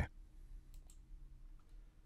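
A few faint clicks of a computer mouse button, close together a little under a second in.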